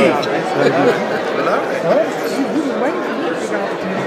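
Several people talking over one another in a crowded room: indistinct chatter.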